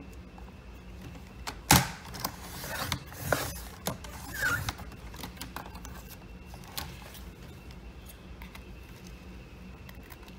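Sliding paper trimmer cutting a strip off a paper card: a sharp click about two seconds in, then scraping and rattling for about three seconds as the blade head runs along the rail.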